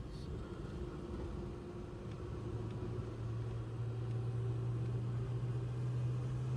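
The 1966 Plymouth Barracuda Formula S's 273 V8 is heard from inside the cabin, pulling in top gear at low road speed. Its low drone creeps slightly up in pitch as the car gains speed, over steady road noise.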